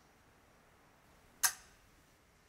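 Near silence, then a single sharp click about one and a half seconds in that rings out briefly.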